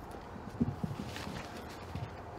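Handling noise from a body bag on a metal wheeled stretcher: a few soft, low knocks about half a second to a second in, followed by a faint rustle.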